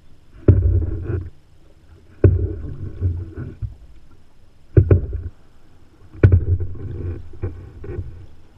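Open-canoe paddle strokes: four strokes, each a sharp splash as the blade goes in, followed by about a second of water rushing and gurgling past the blade and hull. The strokes come irregularly, one every one and a half to two and a half seconds.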